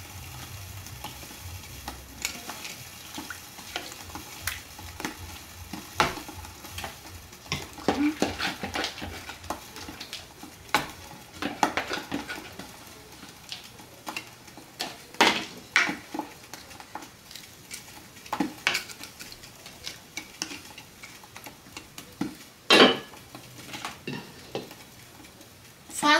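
Wooden spatula stirring rice and broth in a cooking pot: irregular scrapes and knocks against the pot over a faint steady sizzle from the hot pot. A louder knock comes near the end.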